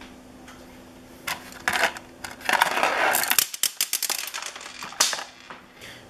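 Hard gobstopper candies rattling and clicking against each other as they are handled in a plastic zip-top bag. The clicks start about a second in, crowd together in a flurry midway, and end with a single sharp click about five seconds in.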